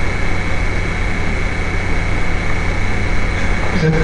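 Steady low hum and hiss with a thin high-pitched whine; a man's voice begins a word at the very end.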